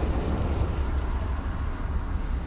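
Steady low rumble of a car's engine and running gear heard from inside the cabin, the car moving slowly in traffic.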